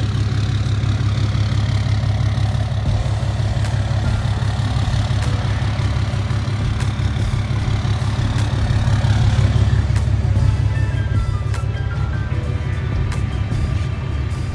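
Pickup truck engine idling steadily. Background music comes in over it from about ten seconds in.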